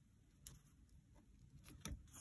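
Faint handling sounds of paper strips and a pin being adjusted by hand: a soft tick about half a second in, then a small cluster of clicks and rustles near the end, the loudest just before the end.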